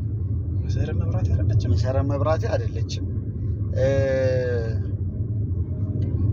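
A man's voice talking over the steady low rumble of a car cabin on the move, with one long drawn-out vocal note about four seconds in.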